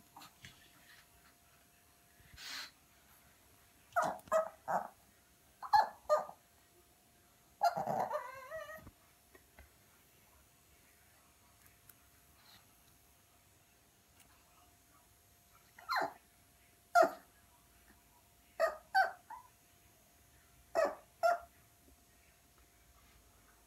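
Small puppy barking in short, sharp yips in clusters of two or three, with one longer, wavering bark-whine about eight seconds in. She is barking at her own reflection and the toy seen in a mirror.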